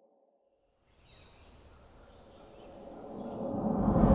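Silence for about a second, then faint outdoor-style ambience fades in and swells steadily into a rising build, an intro sound-design riser leading into a musical hit.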